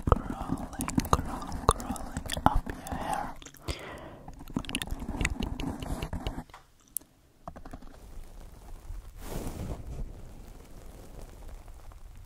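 Wet mouth clicks and whispery mouth sounds made into a grey foam tube held over the microphone, dense for the first six seconds or so. After a short lull it goes quieter, with a soft breathy swell about nine seconds in.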